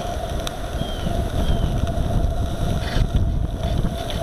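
Wind buffeting the microphone of a camera riding on a small live steam boat under way, a rough low rumble with a steady hum beneath it. Two faint short chirps sound in the first half.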